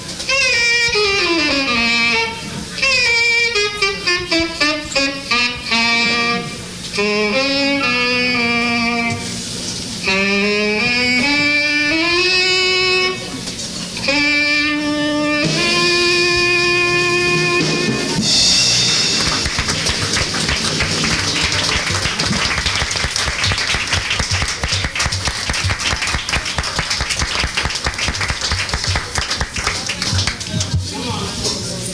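Tenor saxophone playing an unaccompanied closing cadenza: a single line of runs and falling sweeps, ending on a long held note about sixteen seconds in. Audience applause follows for the rest.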